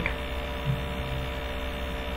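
Steady electrical mains hum: a low buzz made of many evenly spaced steady tones.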